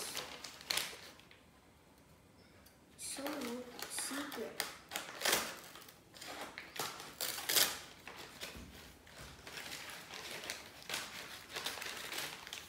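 Stiff brown paper being cut open with scissors and handled: irregular crinkling and rustling with snips of the blades, busier in the second half.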